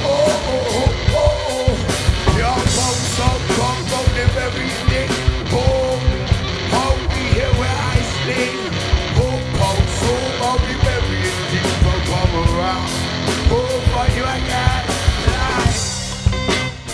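Live rock band playing: a drum kit keeping a fast, busy beat under electric guitar, with bending pitched lines from guitar or voice weaving above it.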